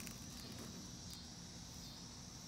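Quiet outdoor background: a faint, steady high-pitched hiss with a low rumble underneath, and no distinct events.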